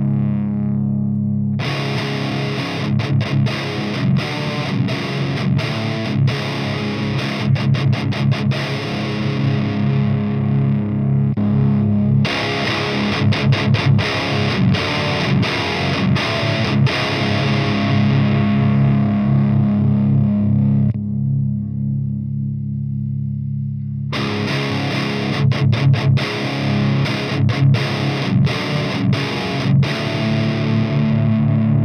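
Electric guitar with Bare Knuckle Warpig pickups played through a Fortin Sigil tube amp head in high gain: distorted metal riffing with tight muted chugs and abrupt stops. A low note is left ringing alone for a few seconds about two thirds of the way through, before the riffing starts again.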